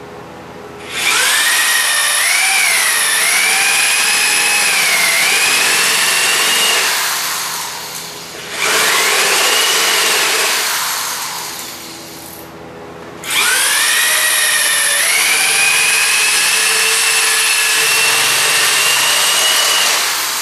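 Electric drill spinning a Forstner bit, milling the raised tread off aluminium diamond plate around a bolt hole so a washer will sit flush. The drill runs in three spells, starting about a second in with short pauses between, its whine rising and dipping in pitch as the speed and load change.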